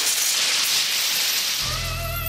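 TV commercial soundtrack: a loud, dense hissing rush, then near the end a held musical note with a slight waver comes in over a low hum.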